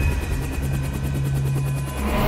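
Helicopter running on the ground with its rotor turning, a steady drone with a fast, even rotor chop.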